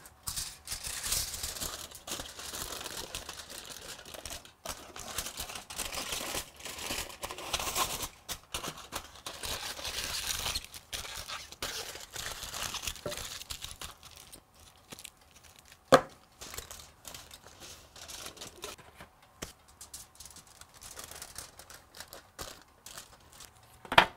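Aluminium foil crinkling and crumpling as resin-soaked wood blanks are wrapped in it by hand, busiest in the first half and softer later. A single sharp click comes about two-thirds of the way through.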